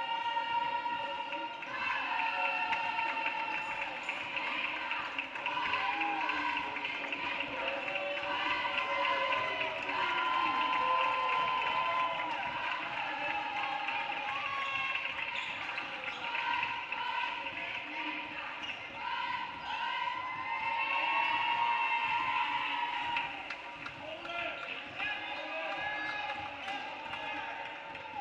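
Several basketballs being dribbled on a hardwood gym floor during warm-ups, the bounces overlapping, with voices echoing in the hall.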